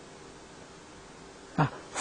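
Faint room tone with a low steady hiss. Near the end comes a brief, falling vocal sound from the man as he draws breath to speak again.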